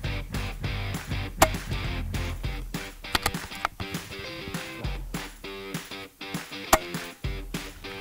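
Background guitar music, with two sharp cracks about five seconds apart: the quiet shots of a shrouded, suppressed .22 Daystate Huntsman Regal XL precharged air rifle.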